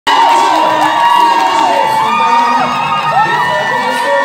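A crowd of many voices cheering and shouting together, with high held cries and rising-and-falling calls overlapping throughout.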